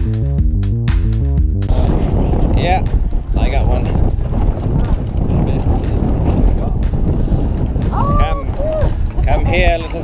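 Electronic music with a steady beat that cuts off suddenly under two seconds in, giving way to a loud, steady rumble of wind and sea noise on an open fishing boat, with faint voices in the background.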